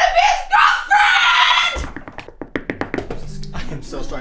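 Loud, high-pitched screaming for about the first two seconds, then a quick, uneven run of sharp taps and thuds as of a scuffle, with a lower voice coming in near the end.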